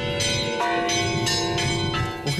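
Monastery church bells ringing together, several bells sounding at once, with fresh strikes at the start and again about half a second in, their tones ringing on between strikes.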